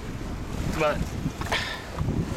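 Wind buffeting the microphone, a steady low rumble, with one short spoken word.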